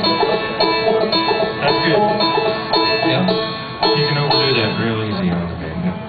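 Five-string banjo picking quick bluegrass rolls, with lower notes from other instruments underneath; it eases off near the end.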